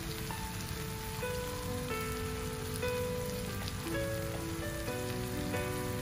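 Shrimp and chopped garlic sizzling in butter in a frying pan, a steady crackle. Soft background music of slow held notes plays over it.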